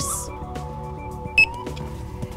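A handheld barcode scanner gives one short, high beep about halfway through as an empty medicine bottle is scanned, over steady background music.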